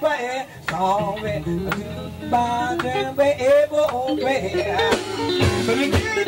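Live blues-rock band music: electric guitar playing a melodic lead line with bent, wavering notes over bass and drums.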